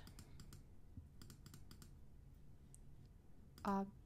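Light clicks of a computer mouse, about half a dozen in quick succession, then a few more a second later: repeated clicking with Inkscape's zoom tool to zoom out.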